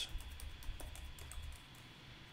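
Typing on a computer keyboard: a quick run of light key clicks that stops about a second and a half in.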